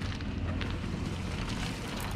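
Wind buffeting a GoPro's microphone: a steady, low rumbling noise over faint street ambience.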